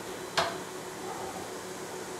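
A single short clink of kitchenware being handled about half a second in, over a steady low background hum.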